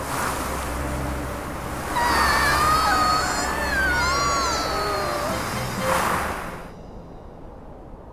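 Cartoon magic sound effect: a long whooshing rush with gliding, whistling tones over background music, fading away about seven seconds in.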